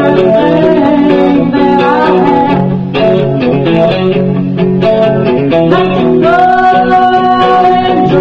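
A woman singing a song, backed by a plucked electric guitar. Near the end she holds one long sung note.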